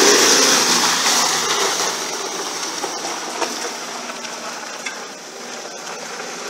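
Nissan Patrol GR 4x4's engine running as it drives away along a dirt track, loudest at first and fading steadily as it moves off.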